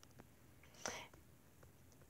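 Near silence: room tone, with one brief soft whisper just under a second in.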